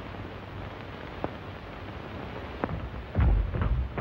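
Steady hiss of an old film soundtrack with two faint clicks. About three seconds in comes a heavy, low rumbling thud, the loudest sound, lasting under a second.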